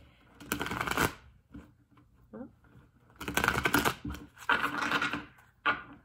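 A deck of tarot cards being shuffled by hand in three noisy bursts of about a second each: near the start, in the middle and towards the end.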